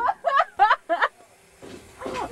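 Short laughter: about four quick 'ha' bursts in the first second.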